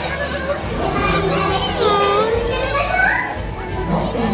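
Live character-show sound in a large hall: a high, sing-song performer's voice gliding up and down over music from the sound system, with the chatter of an audience full of children underneath.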